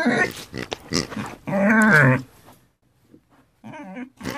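Pigs vocalizing: a few short grunts and one longer, wavering call about one and a half seconds in, then a pause and a faint grunt near the end.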